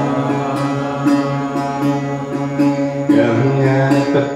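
Devotional kirtan music: a steady drone under a melody of notes struck about twice a second. A chanting voice comes in about three seconds in.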